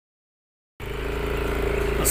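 Silence for almost a second, then an engine running steadily at an even pitch.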